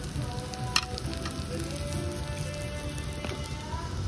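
Food sizzling on a hot cast-iron sizzling plate: a steady crackling hiss as rice is stirred into it, with one sharp clink of the utensil against the plate a little under a second in.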